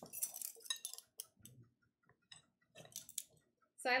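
A spoon clinking and scraping against a glass mixing bowl as cookie dough is scooped out, a few light scattered taps with a quiet stretch in the middle.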